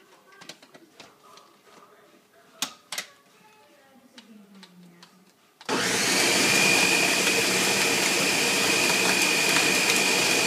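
A few sharp clicks as the Ninja blender's lid is fitted onto the pitcher. About six seconds in, the blender motor starts suddenly and runs steadily at high speed with a high whine, blending ice and fruit.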